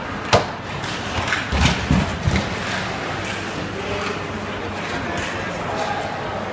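Ice hockey play along the boards and glass close by: one sharp crack a moment in, then a few heavy thumps around two seconds in, over arena crowd chatter.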